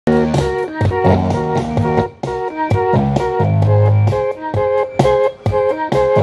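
Music played from a pad sampler: a repeating keyboard-like riff of short stepping notes over a regular beat, with a low sustained note for about a second near the middle.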